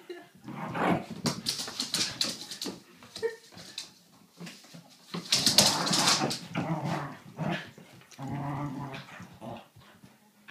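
Two whippets play-fighting: bursts of growling mixed with scuffling, with a quieter lull around the middle.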